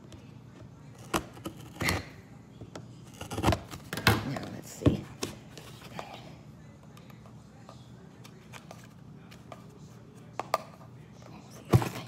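Hands working at the taped plastic end cap of a cardboard mailing tube: a series of sharp clicks, scrapes and taps, bunched in the first five seconds and again near the end.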